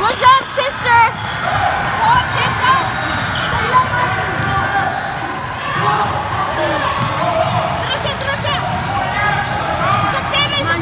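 Basketball game on a hardwood gym court: sneakers squeaking in many short chirps, the ball bouncing, and voices calling out over the play.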